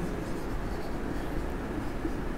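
Marker pen writing on a whiteboard, over a steady low hiss of room noise.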